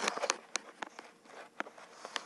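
A string of light, irregular clicks and taps from fingers tapping and swiping on an iPad touchscreen.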